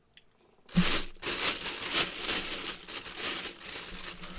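Thin clear plastic bag crinkling loudly as the football helmet sealed inside it is handled, starting just under a second in and going on in uneven rustles.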